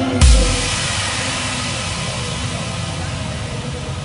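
Stage backing music ending on a single loud, deep booming hit about a quarter second in, followed by steady audience applause that slowly fades.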